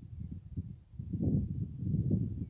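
Wind buffeting the microphone: an irregular, gusting low rumble that swells about a second in.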